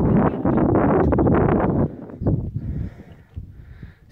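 Wind buffeting a phone's microphone, loud for about two seconds and then dropping away, leaving faint ticks.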